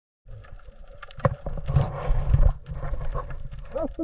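Muffled underwater noise picked up by a handheld camera below the surface: low rumbling water movement with scattered knocks, loudest in the middle. A man's voice starts just before the end.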